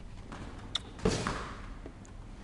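A kick or punch smacking into a handheld striking shield: one sharp impact about a second in, just after a lighter click.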